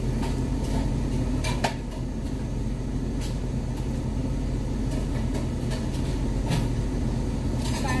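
Car engine idling, a steady low hum inside the cabin, with a radio playing low and a few light clicks.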